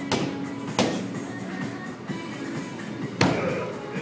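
Three punches from boxing gloves landing on a handheld padded strike shield: one at the very start, one just under a second in, and a hard one about three seconds in. Background music plays throughout.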